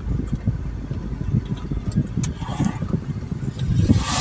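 Car cabin rumble from the engine and tyres while driving. An oncoming lorry passes close by near the end, in a swelling whoosh.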